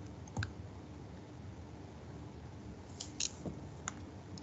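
A few computer mouse clicks over faint room hum: one about half a second in and a quick cluster near the end.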